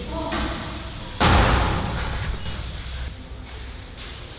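A single loud slam about a second in, echoing and dying away over a second or two in a hard-walled restroom.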